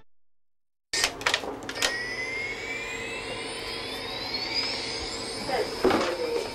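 Silence for about a second, then a few clicks and a steady hum with a high whine that rises steadily in pitch; a voice begins near the end.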